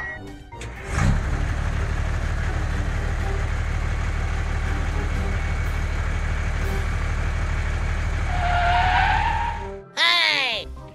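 Tractor engine sound running steadily at an even pitch, starting about a second in and cutting off suddenly just before the end, for a toy tractor pulling a loaded trolley. Near the end a short pitched sweep sounds over it.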